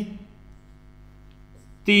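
Steady electrical mains hum, a low buzz with many even overtones, lying under the recording. A man's voice comes back in near the end.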